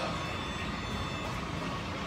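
Steady low rumble and hum of a busy gym's room noise, with no distinct knocks or events.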